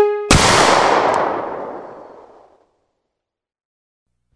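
A single pistol shot about a third of a second in, cutting off the music, its echo dying away over about two seconds.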